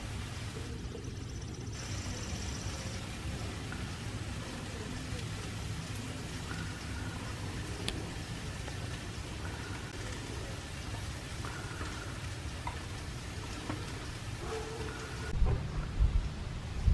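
Steady outdoor background noise: an even hiss over a low rumble, with a few faint, short high tones now and then.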